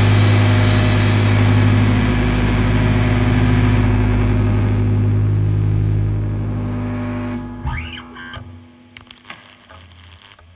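Sludge metal band's distorted electric guitars and bass holding one sustained chord that rings out and slowly loses its brightness. It cuts off about seven and a half seconds in, leaving a few quieter string and amplifier noises.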